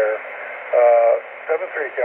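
Speech received over a 10-metre FM repeater, heard from the transceiver's speaker: a thin, narrow-sounding voice in short phrases with a steady low hum beneath it.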